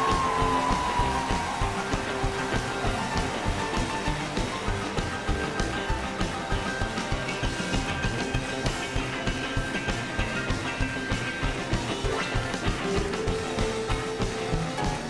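Boogie-woogie piano with a band including double bass, playing an up-tempo number with a steady fast beat.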